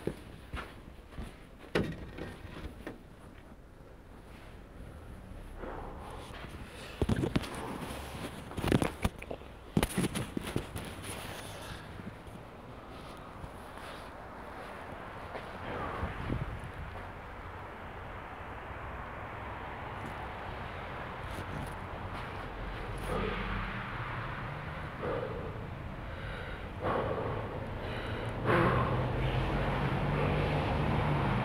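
Footsteps on a snowy, slushy sidewalk, with a few sharp knocks in the first third. Street traffic noise grows steadily louder, and near the end a car's engine hum comes up as it passes.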